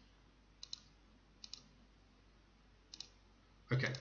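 Computer mouse clicking while a dialog box is worked through: three quick pairs of clicks, a little under a second apart at first, then one more pair about a second and a half later.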